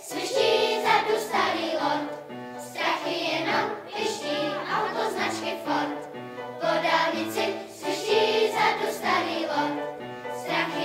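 Children's choir singing a song in phrases that swell and fall about once a second, with low accompaniment notes underneath.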